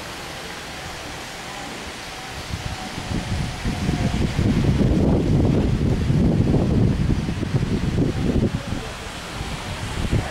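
Wind buffeting the camcorder's microphone: a low rumbling that picks up about three seconds in, gusts unevenly and eases just before the end, over a steady hiss.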